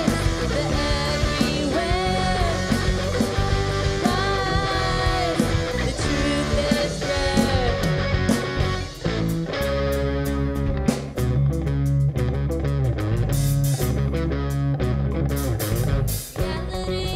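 A three-piece rock band playing live: electric guitar, electric bass and drum kit. A sung vocal line runs over the first half, giving way to a heavier instrumental passage with strong, pulsing bass.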